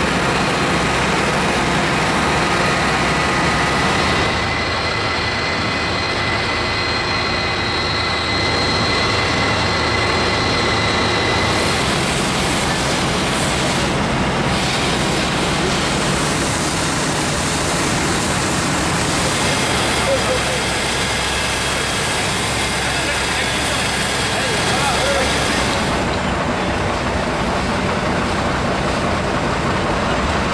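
Fire engines' engines running steadily, a dense continuous mechanical noise with a low hum, while indistinct voices carry in the background.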